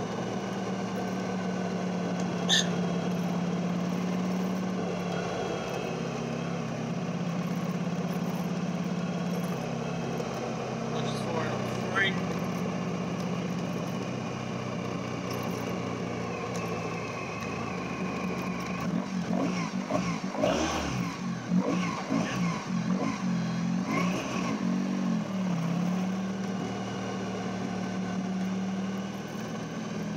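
Honda ST1100 Pan European's V4 engine running as the bike is ridden, with wind noise on the helmet microphone. From about twenty seconds in, the sound turns uneven and choppy for several seconds, then steadies again. The bike's battery is running down from a charging fault that the rider puts down to the rectifier, and it dies moments later.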